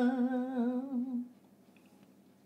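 A woman's unaccompanied voice holds the long closing note of a traditional Galician song, its pitch wavering gently, then fades out a little over a second in.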